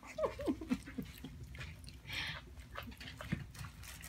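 Mini piglets grunting: a quick run of about six short grunts in the first second, each falling in pitch, followed by a noisy sniff about two seconds in and a small knock just after three seconds.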